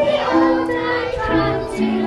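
A group of young children singing a song together in held, steady notes.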